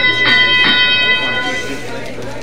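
FTC field scoring system's match-period start sound over the arena speakers: one bright electronic musical tone, re-struck twice in quick succession and fading out about a second and a half in, marking the start of the driver-controlled period.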